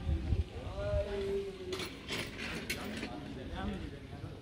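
An indistinct voice with no clear words, over low rumbling from wind or handling on a phone microphone in the first half-second.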